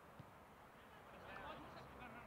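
Near silence: faint outdoor ambience, with a faint click a moment in and a slight rise in faint background sound in the second half.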